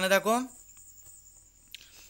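A voice finishes a word in the first half second, then a pause in which only a faint, steady high-pitched whine is heard, with a brief breath-like sound near the end.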